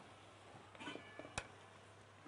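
Quiet kitchen background with a faint, brief squeak a little under a second in, then a single sharp click, as a pot lid or cooking utensil is handled.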